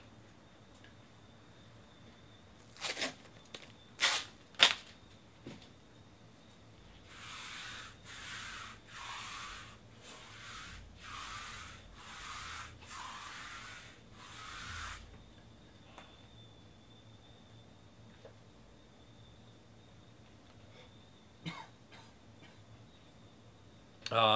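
Baseball trading cards being handled: a few sharp snaps, then a run of about eight short hissing slides, roughly one a second, as cards are slid one by one off the stack.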